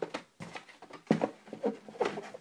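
Die-cast toy cars and their packaging being handled and sorted: a few sharp clicks and knocks, the loudest just after a second in.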